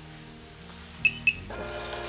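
Two short, high beeps about a quarter second apart from a checkout barcode scanner as the plastic plant pot is scanned at the till.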